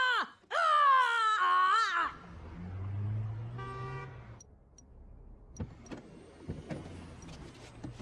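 A woman yelling in rage, long and loud, for about two seconds. Then city traffic with a car engine running, a short car-horn toot about three and a half seconds in, and a few faint clicks.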